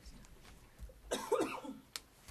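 A person coughing once, about a second in, followed by a short sharp click near the end.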